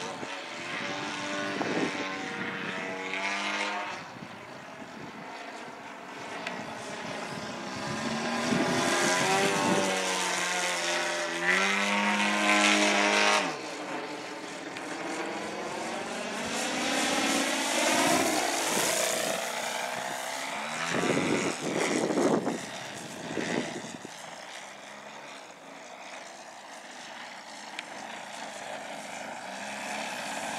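Radio-controlled Yak 54 aerobatic model plane flying overhead, its propeller engine repeatedly rising and falling in pitch and loudness through its manoeuvres, with several louder passes in the middle.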